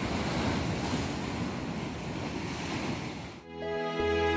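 Ocean waves breaking over a rocky shore: a steady rush of surf that cuts off suddenly about three and a half seconds in, where soft music with a low held note begins.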